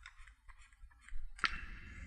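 Faint scattered clicks over a low hum, with one sharper click about one and a half seconds in.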